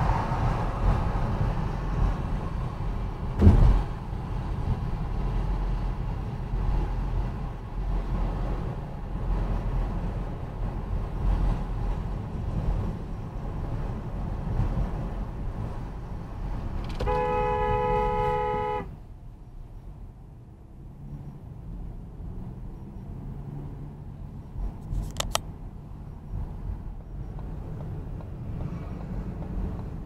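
Steady road and engine rumble heard from inside a moving car, with a sharp knock a few seconds in. About seventeen seconds in, a two-note car horn sounds once, held for nearly two seconds, after which the road noise is quieter.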